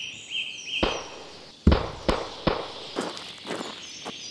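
A run of sharp footstep-like knocks on an animation's soundtrack, about six in three seconds and roughly two a second after the first. Short high beeping tones come just before them at the start.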